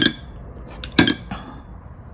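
Porcelain paint dishes clinking as a paintbrush is loaded with colour: two sharp clinks about a second apart, with a few lighter taps between and after.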